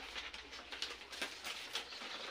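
Coconut palm leaflets rustling softly as they are interlaced by hand, in short irregular rustles.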